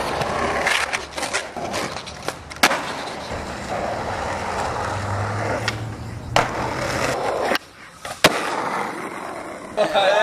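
Skateboard wheels rolling on concrete, broken by several sharp clacks of the board popping and landing.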